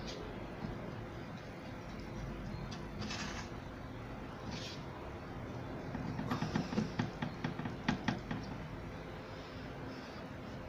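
Paintbrush swishing and tapping on a frame as white paint is brushed on lightly, over a steady fan hum. A quick run of taps and scrapes comes about six seconds in and lasts a couple of seconds.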